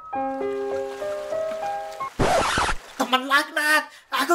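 A slow melody of held notes, then about two seconds in a loud, half-second rush of noise, a cartoon sound effect as the pocong character rises out of the water. A short cartoon voice follows near the end.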